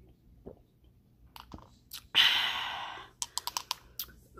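Drinking juice from a glass, with small wet clicks of sipping and swallowing, then a sudden loud breathy exhale after the drink about two seconds in that fades within a second. Near the end comes a quick run of about six light clicks.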